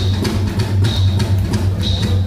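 Live pop band starting a song right on a count-in, with a Tama drum kit keeping a steady beat under a strong bass line and guitar.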